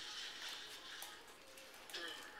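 Faint rustling and a few light ticks as puppies move about on a fleece blanket and plastic sheeting.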